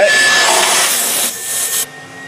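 Electric secondary air injection (smog) pump running with a steady whoosh and a thin whine. It cuts off suddenly near the end, shutting itself off on its own timer after being commanded on by a scan tool.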